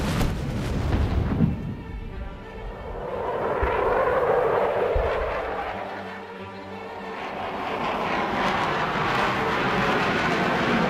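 An explosion goes off with a sudden blast, its rumble carrying on, followed by the roar of jet aircraft flying over that swells, dips and swells again. Music plays underneath.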